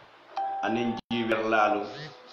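A man talking into a studio microphone in a local West African language, with the sound cutting out for an instant about a second in. A brief steady tone sounds under his voice for about half a second.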